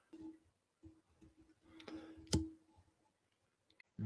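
Faint clicks and handling noises from a tarot card being moved about over a table, with one sharper click a little past two seconds in and a faint low hum coming and going.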